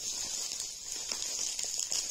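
Faint rustling and a few light clicks of packaging and small items being handled, over a steady high hiss.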